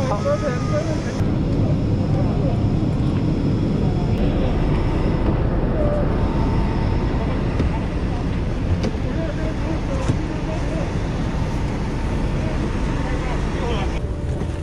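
Steady engine noise on an airport apron: a low rumble with a faint steady whine above it.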